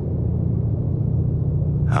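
A steady low rumble with only a faint hiss above it, unchanging throughout.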